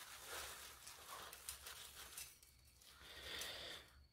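Faint, irregular rustling of a plastic bag being handled and tipped, with dried bee pollen granules pouring out of it into a plastic plate.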